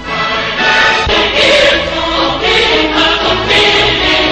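A choir singing slow, sustained chords as background music, each held chord giving way to the next every second or so.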